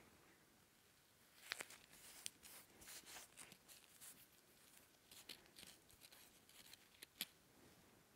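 Near silence, with faint scattered rustles and ticks of Cover-Roll Stretch adhesive tape being pressed and smoothed over closed lips by fingertips. Two slightly sharper clicks come about one and a half seconds in and near the end.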